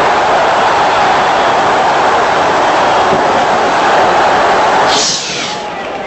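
Football stadium crowd cheering a goal, a loud steady roar that drops away suddenly about five seconds in.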